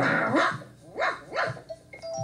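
Dog barking: four short barks in quick succession, heard through a television's speaker.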